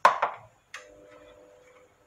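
Two sharp knocks of hard objects, then a click followed by a faint steady ringing tone that lasts about a second.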